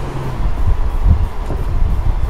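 Ford Mustang convertible's 4.0-litre V6 running on the move with the top down, with wind and road noise over a low engine rumble; a steady engine note drops away shortly after the start.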